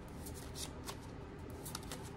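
A deck of oracle cards shuffled by hand: a quiet run of scattered, light card flicks and slides.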